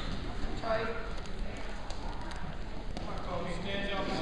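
Voices shouting in a large, echoing gymnasium during a wrestling bout, with light thumps and scuffs of the wrestlers' feet on the mat.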